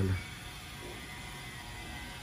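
The last syllable of a man's word, then steady low background noise with no distinct sound in it.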